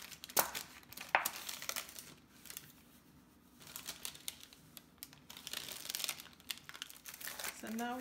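Parchment paper crinkling and a flexible silicone mold being bent and handled as set butter rounds are popped out onto the paper, with two sharp clicks in the first second or so.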